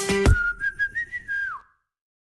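Outro jingle: a short stretch of music with sharp drum hits, then a whistled tune of a few notes that glides down at the end and stops about a second and a half in.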